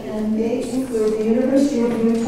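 Only speech: a woman talking into a lectern microphone.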